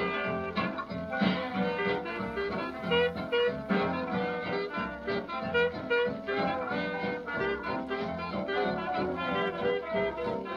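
Swing-era Chicago-style jazz played from a 1938 shellac 78 rpm record: a clarinet solo over a rhythm section of piano, tenor guitar, string bass and drums, with a steady beat. The sound is cut off above the middle treble, as on an old disc.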